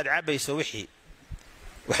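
A man's voice speaking into a headset microphone. It breaks off a little under a second in and resumes about a second later.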